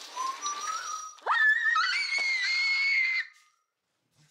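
A woman's startled high-pitched scream at spotting a cockroach: a quieter rising cry, then about a second in a sudden loud shriek held for about two seconds before it cuts off.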